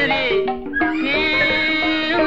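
Burmese classical pat pyoe song with hsaing waing ensemble accompaniment: a high, wavering melodic line gliding between notes over held lower tones, with a brief dip in loudness about half a second in.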